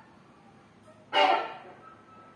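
Free-improvised playing on double bass and electric guitars: after a near-quiet start, a sudden loud note cluster of many tones at once comes in about a second in and fades within about half a second.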